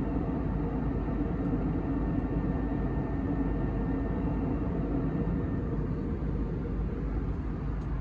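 Steady cabin noise of an Airbus A320neo in cruise, heard from a window seat beside the wing and engine: an even low rumble of engines and airflow.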